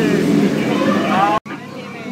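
Boat passengers' voices and chatter, with one voice rising in pitch about a second in; the sound cuts out abruptly at about a second and a half, leaving quieter, fainter voices.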